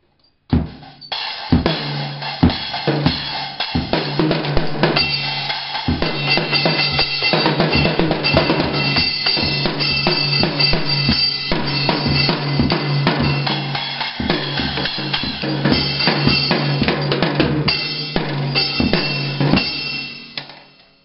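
A small child playing a junior drum kit with sticks: a fast, nearly nonstop run of hits on the drums and cymbals, the cymbals ringing throughout. It starts about half a second in after a brief silence.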